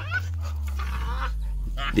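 A dog fighting a baboon: short rising animal cries about a quarter-second in and again near the end, over a low steady hum.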